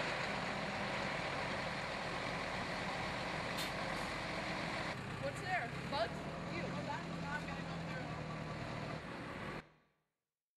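Heavy truck's diesel engine idling steadily under a noise haze, with distant voices calling out over it from about halfway through. The sound cuts off suddenly near the end.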